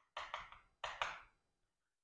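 Chalk writing on a chalkboard: two short runs of scratching and tapping strokes within the first second and a half.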